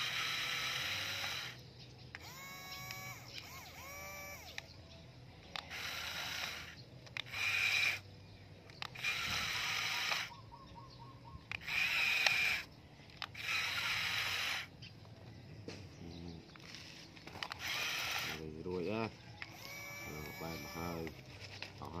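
Small electric gear motor of an RC toy dump truck whirring in short bursts of about a second, stopping and starting again several times as the tipper bed is moved. Brief voice sounds come in between the bursts.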